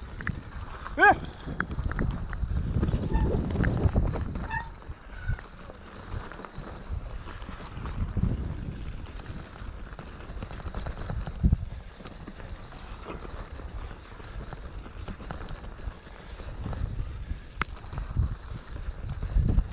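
Mountain bike riding down a rough dirt singletrack: a continuous low tyre rumble with frequent sharp rattles and knocks from the bike, and wind on the microphone. A short vocal call about a second in.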